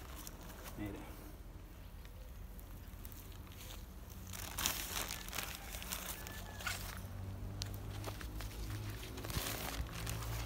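Plastic fertilizer bag crinkling and rustling as worm humus is poured and shaken from it onto the soil, with bursts of rustling around the middle and again near the end.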